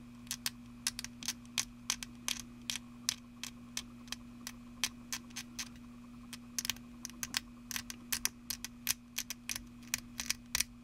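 Hand-turned pin vise with a fine bit working in a small plastic model engine part, making small irregular clicks and scrapes, about three or four a second, some in quick little clusters.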